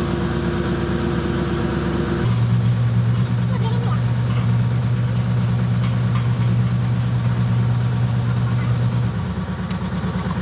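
A diesel engine idling steadily. About two seconds in its hum changes to a stronger, deeper note and gets a little louder, then eases back just before the end.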